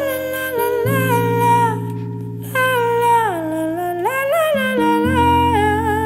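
A woman's voice singing a wordless melody in long notes that slide up and down, over sustained keyboard chords that change about a second in and again near the end.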